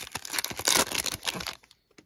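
Foil wrapper of a Panini Donruss basketball card pack being torn open and crinkled, a crackling rustle that is loudest partway through and stops about a second and a half in.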